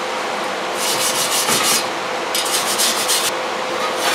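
Scratchy rubbing noise in two bursts of about a second each and a brief third at the end, over a steady hum: fingers rubbing over the phone and its microphone as it is handled.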